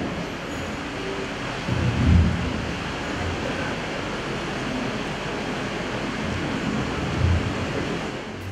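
Steady background noise of a large, crowded hall, with a few low thumps about two seconds in and again near the end.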